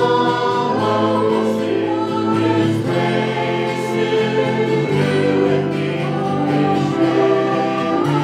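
Worship music with a group of voices singing together.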